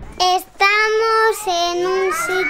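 A child's voice singing a few drawn-out notes: a short note, then a long held one and another after a brief break.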